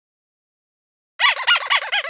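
Intro sting sound effect: a rapid run of high, squeaky chirps, each rising and falling in pitch, about eight a second, starting a little over a second in.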